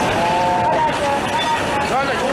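Loud, steady roar of a tsunami surge rushing through the harbour, with a drawn-out voice calling out over it in the first second.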